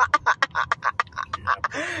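A person laughing hard in quick, short ha-ha pulses, about eight a second, ending in a longer breathy note near the end.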